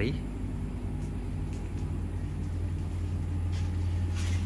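Air conditioner running in a closed room: a steady low hum with a few constant low tones.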